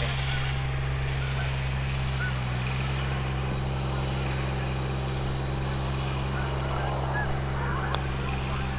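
A motor running steadily nearby: an even, low drone that does not change in pitch or level.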